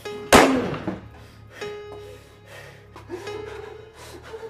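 A single handgun shot about a third of a second in, sharp and much louder than everything else, ringing off over half a second. Background music with a held tone plays under it.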